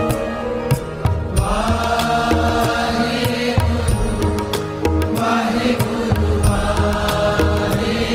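Devotional chant set to music: voices singing drawn-out phrases over a sustained drone and a steady percussion beat.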